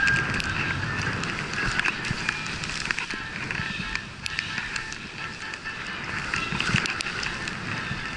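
Skis sliding through deep powder snow, a steady rush of noise with scattered small clicks.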